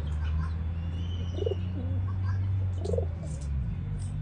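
Rock pigeon cooing, two short low warbling coos about a second and a half apart, with small high bird chirps. A loud steady low hum runs underneath and drops away near the end.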